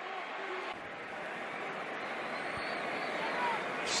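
Football stadium crowd noise: a steady din of many voices, with a brief click near the end.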